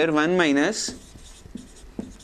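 A man's voice in the first moment, then a marker writing on a whiteboard in short strokes.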